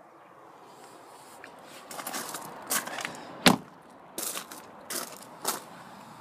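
Footsteps crunching on gravel, starting about two seconds in and coming about one every 0.7 seconds, with a louder, deeper thump about halfway through.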